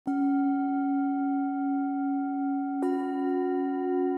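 Singing bowl struck twice, near the start and again nearly three seconds later. The second strike adds a slightly different, higher ring, and both tones ring on steadily with a slow waver.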